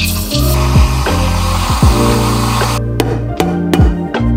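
Steam wand of a De'Longhi EC685 espresso machine hissing as it froths milk in a steel pitcher, cutting off suddenly near the end, over background music with a deep bass beat.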